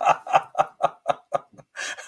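A man laughing: a run of short chuckles that slows and fades away about a second and a half in.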